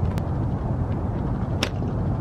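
A slingshot shot: one sharp crack about one and a half seconds in as a chunk of ferro rod strikes a Bic lighter and bursts it without sparking, after a faint click near the start. A steady low rumble lies underneath.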